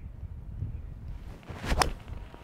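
Four iron striking a golf ball off fairway turf: one sharp, crisp click near the end, a well-struck shot. Low wind rumble on the microphone underneath.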